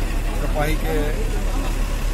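Steady low rumble of a bus engine idling, under a man speaking in Hindi.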